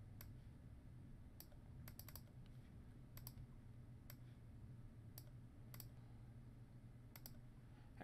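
Faint computer mouse clicks, about a dozen scattered irregularly, over near-silent room tone.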